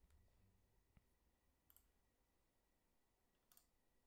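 Near silence: room tone with a few faint clicks of a computer mouse, spaced out over the few seconds.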